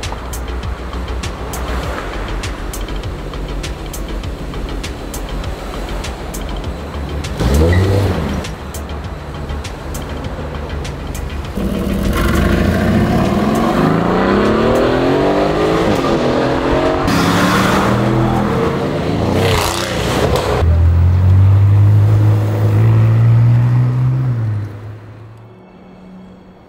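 Street traffic with background music. About twelve seconds in, an Aston Martin Vantage accelerates hard, its engine note climbing in repeated rising sweeps as it revs through the gears. It then holds a loud, low, steady drone for a few seconds before fading just before the end.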